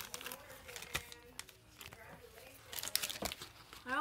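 Foil Pokémon booster pack wrapper crinkling as it is handled: quiet, irregular crackles.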